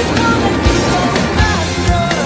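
Rock band music, with regular drum hits over a steady bass line.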